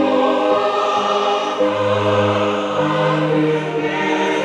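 Choir singing gospel praise music in slow, long-held chords that change every second or so, over a sustained low bass.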